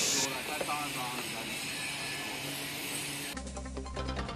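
Faint steady workshop background with a brief faint voice. About three seconds in it cuts to title music with a deep bass note.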